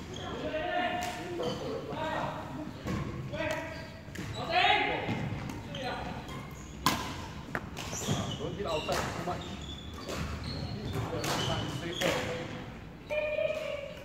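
Voices echoing in a large sports hall, with repeated sharp cracks of badminton rackets striking shuttlecocks and impacts on the wooden court; one crack about 7 seconds in stands out as the loudest.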